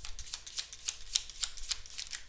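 A deck of playing cards being shuffled by hand, an irregular run of light clicks and snaps.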